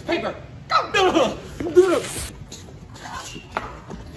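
Two voices shouting "Rock, paper, scissors, paper!" together, with laughter.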